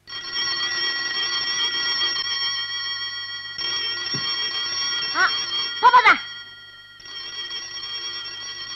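Black rotary-dial desk telephone's bell ringing in long continuous rings: one from the start for about six seconds, then a pause of about a second before it rings again. A boy's voice calls out briefly twice near the end of the first ring.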